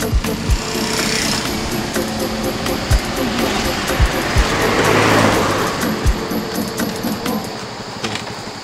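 Background music fading out under outdoor road noise, with a motor vehicle passing by around the middle, swelling and then dying away.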